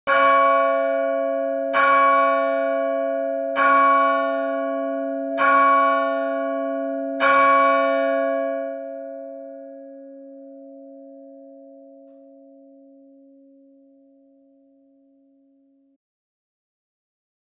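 A single church bell struck five times, about two seconds apart, each stroke at the same pitch. After the last stroke, a little past seven seconds in, its ringing hum fades away slowly over several seconds.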